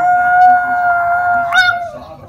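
A Chihuahua howling: one long howl held on a single steady pitch, with a brief upward break about a second and a half in, stopping near the end.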